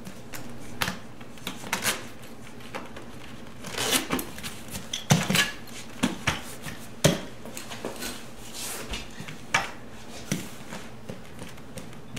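Leather motorcycle saddlebag being hung over the rear fender and shifted into place by hand: irregular clicks and knocks of its metal buckles and fittings, with leather rustling between them. The loudest knock comes about seven seconds in.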